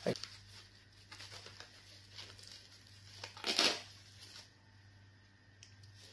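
Plastic wrap crinkling and rustling as it is untied and peeled off a ball of fufu, with faint scattered crackles and one louder rustle a little past the middle.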